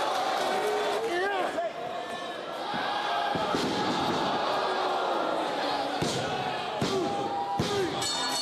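Heavy thuds of a wrestler's body slamming onto the ring canvas, a few separate impacts with the clearest about three and a half seconds in and near the end, over steady voices and shouts from a crowd in a hall.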